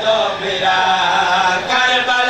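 Male voices chanting devotional verses in long, gliding melodic lines, amplified through microphones.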